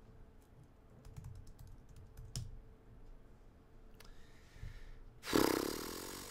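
Faint computer keyboard typing: a scattering of quick, light clicks over the first half. A louder, short rush of noise near the end fades out over about a second.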